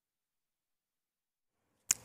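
Dead digital silence, broken just before the end by a single short click as the sound cuts over to the studio.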